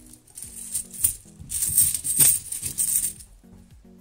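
Loose 50p coins clinking and jingling against each other inside a cloth bag as a hand rummages through it, in several short rattling bursts, busiest about two seconds in and dying away near the end.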